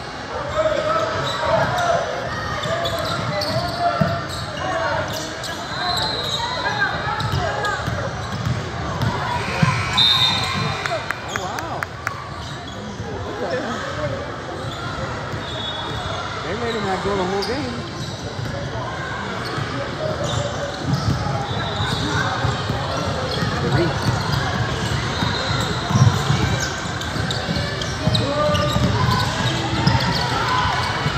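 Basketballs bouncing on a hardwood gym floor during a game, with the voices of players and spectators in the gym.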